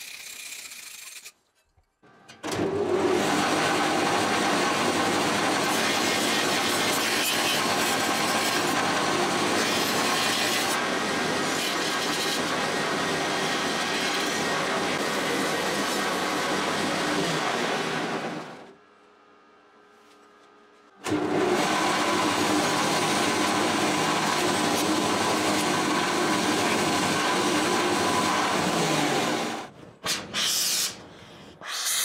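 Bench grinder running with a steel workpiece pressed against the spinning wheel: a loud, steady grinding and rubbing noise. It goes on for about sixteen seconds, drops away for about two seconds, then runs again until just before the end.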